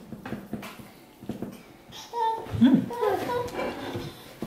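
Indistinct voices in a small room, including a young child's voice. The first half is quieter with a few faint clicks, and the talk starts about halfway through.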